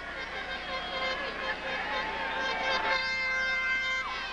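Football stadium crowd noise: many voices shouting at once. A steady held tone joins in about three seconds in.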